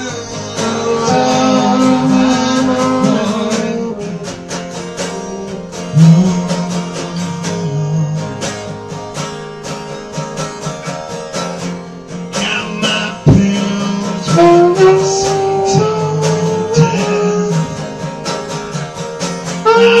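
Saxophone playing a melodic line of held and bending notes over a strummed acoustic guitar.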